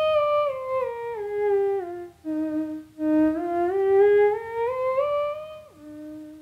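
Theremin playing a one-octave scale down and back up, each note a clear separate step rather than a slide, played by moving only the fingers of the pitch hand. Near the end the pitch drops an octave to a held low note.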